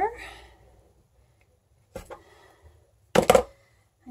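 A metal knife knocking against a plastic cutting board while vanilla beans are split: a single click about two seconds in, then a louder quick clatter of three or four knocks near the end.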